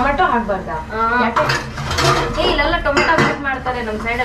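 Kitchen clatter of steel utensils and containers clinking as jars are handled on the shelves, with sharp clinks about three seconds in, over a woman talking.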